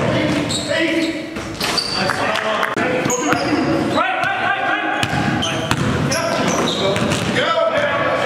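Basketball game sound in a large gym hall: a ball bouncing on the floor, sneakers squeaking, and players' voices.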